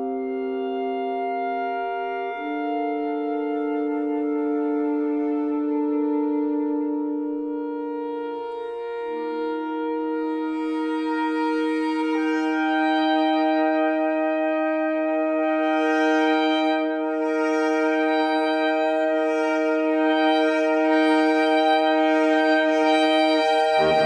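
A saxophone quartet of soprano, alto, tenor and baritone saxophones plays slow, long-held chords that shift to new harmonies every few seconds. The chords grow a little louder and brighter after about ten seconds.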